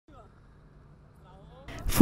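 Very quiet outdoor background with a few faint voice-like sounds. Near the end the level rises as a woman's voice starts speaking.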